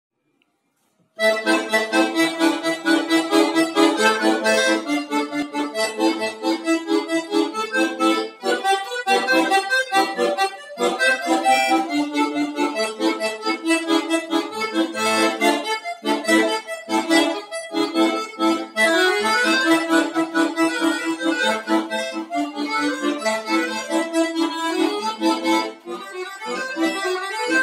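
Bayan (Russian chromatic button accordion) playing a polka in quick, bouncing notes, starting about a second in.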